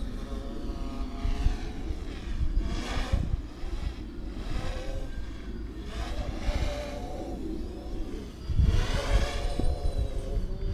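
Quadcopter's electric motors and propellers whining, the pitch rising and falling with the throttle. It swells louder about three seconds in and again near the end, over a low rumble.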